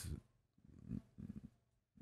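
Near silence in a pause in a man's speech, with a few faint low sounds, such as a breath, around the middle.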